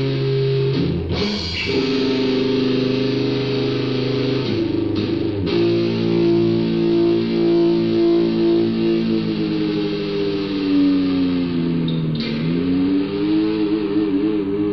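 Raw black metal rehearsal music from a cassette demo: electric guitar holding long sustained chords, changing about a second in and again around five and a half seconds, with a slow bend down in pitch and back up near the twelve-second mark. The recording is lo-fi, with a dull top end.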